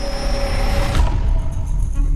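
Ominous horror-trailer sound design: a deep low rumble under held high and mid tones that cut off about a second in, leaving a darker low drone.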